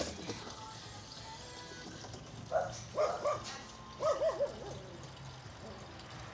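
Several short, high-pitched voiced sounds in quick little groups, about two and a half to four and a half seconds in.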